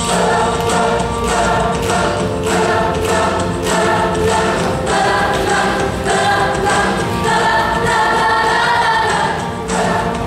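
Middle school mixed show choir of girls' and boys' voices singing in full harmony, loud and sustained, the chords changing every second or so.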